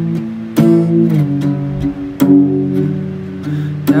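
Acoustic guitar playing slow strummed chords. A new chord is struck about half a second in and another about two seconds in, each left to ring.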